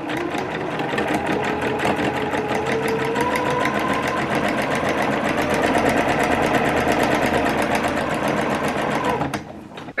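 Electric domestic sewing machine stitching a seam at a steady fast speed, the needle going in a rapid even rhythm over a faint motor whine; it stops about a second before the end.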